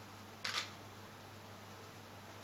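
A single quick camera shutter click, an SLR-type shutter, about half a second in, over quiet room tone with a low steady hum.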